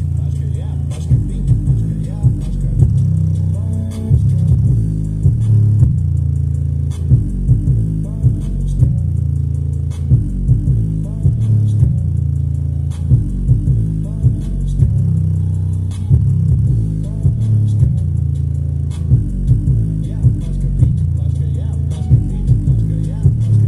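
A small 4-inch woofer playing a rap track at high volume, its deep bass and steady beat carrying most of the sound, with a vocal over it.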